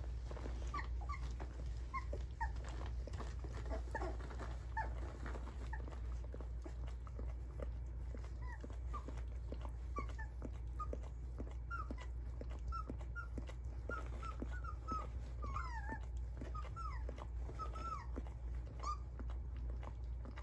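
Young standard poodle puppies squeaking and whimpering in many short, high chirps as they nurse, a few of them sliding squeals in the second half, over a patter of soft small clicks.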